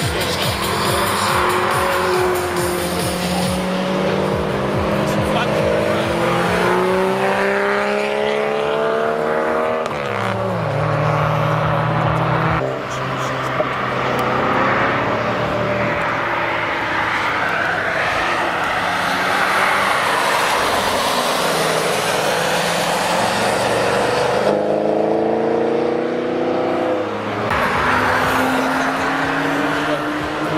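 Engines of several American cars (a Jeep Wrangler, a Chevrolet Camaro, a Shelby Mustang) driving past one after another, each accelerating with its note rising in pitch and dropping at gear changes.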